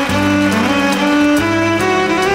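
A fiddle playing the opening of a country fiddle medley in held, bowed notes, backed by a band with a steady bass line and light regular drum ticks.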